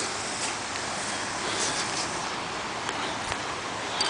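Steady rushing of a creek in flood, fast muddy water running over its banks.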